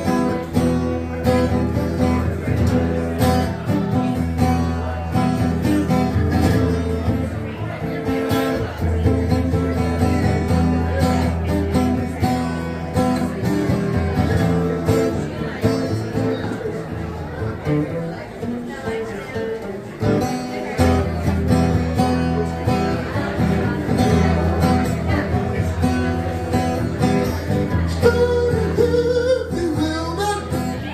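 Acoustic guitar strummed steadily in an instrumental break of a country-style song, with a singing voice coming back in near the end.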